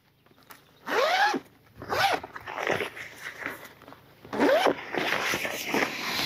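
Zip on a padded fabric stove carry case being pulled open in three strokes: short pulls about one and two seconds in, then a longer pull from about four seconds in.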